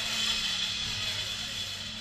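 Room noise with a steady low hum running under it.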